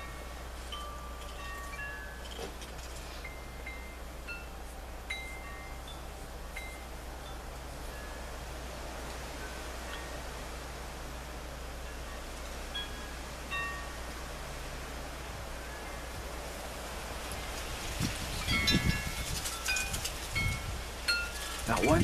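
Wind chimes ringing: scattered single notes at many different pitches, struck at irregular moments. Near the end the notes come thicker, along with louder low rumbling noise.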